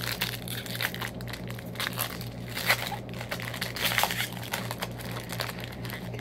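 Plastic-foil trading card pack wrapper crinkling irregularly as it is opened by hand, over a steady low hum.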